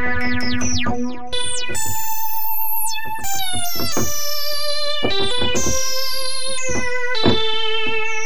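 Thor software synthesizer playing a Casio CZ-style lead patch built from resonant waveforms. A quick run of short notes gives way to held notes with vibrato, their bright upper tones sweeping downward on each note.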